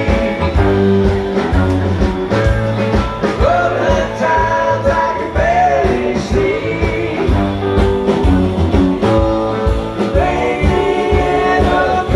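Live rock band playing an instrumental jam, heard from the audience: electric guitar lines with sliding, bending notes over electric bass, keyboard and a steady drum beat.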